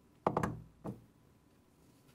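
Handling noise from a table microphone: a quick run of knocks and thumps as it is handled and set down on the table, then one more knock just under a second in.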